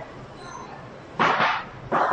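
Two short, loud barks a little over half a second apart, in the second half.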